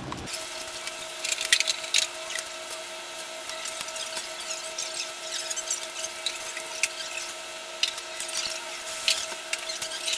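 Steady machine hum in a restaurant dining room, with scattered light clicks and rustling as food and wrappers are handled.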